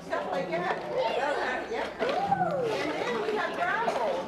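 Many children's voices chattering and calling out at once, overlapping so that no single speaker stands out.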